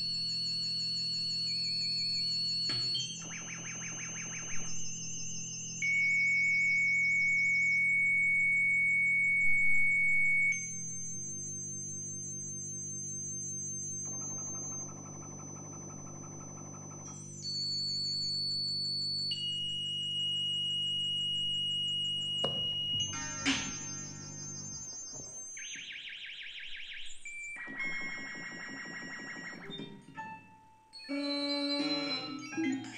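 Circuit-bent electronic instruments played live as experimental electronic music. Held high electronic tones jump abruptly from pitch to pitch over a steady low buzzing drone, with warbling stretches. A burst of stuttering, glitchy crackle comes about two-thirds of the way through.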